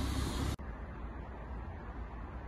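Steady outdoor background noise: a low rumble with hiss. About half a second in it cuts off suddenly and gives way to a quieter, duller rumble.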